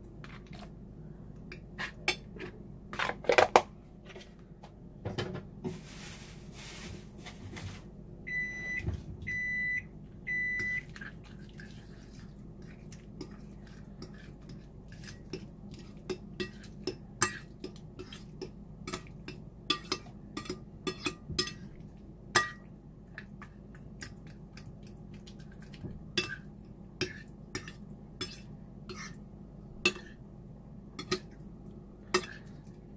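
A metal fork and spoon clinking and scraping on a ceramic plate and a plastic salsa tub, in scattered clicks and clatters. About a third of the way in, a kitchen appliance timer beeps three times, about once a second, after a brief hiss.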